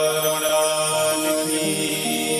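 Harmonium playing sustained notes of a devotional bhajan, changing to new notes about one and a half seconds in.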